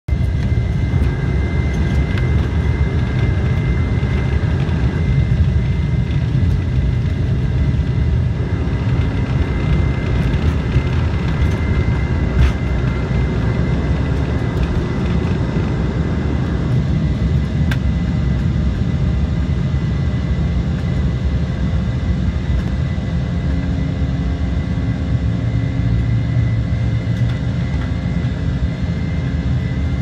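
Inside the cabin of an Embraer E190 on its takeoff run: its two turbofan engines are at takeoff thrust with steady high fan tones, over a heavy rumble from the wheels on the runway. About halfway through the rumble eases as the jet lifts off and climbs, while the engines keep running steadily.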